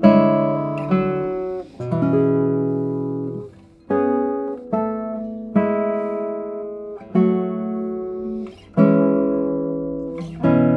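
Amelie Bouvret 2022 No. 20 classical guitar played fingerstyle: a slow passage of plucked chords, each struck and left ringing to fade, a new one about every second.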